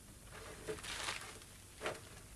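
Rustling and handling noises as household items are hastily gathered up and put away, with a short louder noise near the end.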